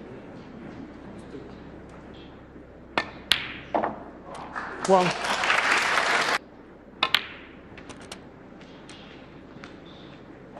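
Snooker balls clicking sharply a few times, followed by a burst of audience applause lasting about a second and a half, then two more ball clicks.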